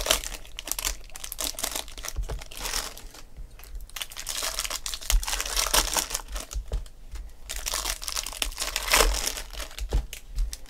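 Shiny plastic wrappers of Bowman Chrome baseball card packs being torn open and crinkled by hand, in irregular spells of crackling with two short lulls, the loudest spell near the end.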